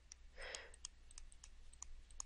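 Faint, light clicks and taps of a stylus on a tablet screen during handwriting, a scattered string of small ticks.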